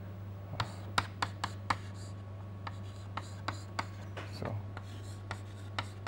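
Chalk tapping and scratching on a chalkboard as an equation is written, a string of irregular sharp taps, the loudest about a second in, over a steady low electrical hum.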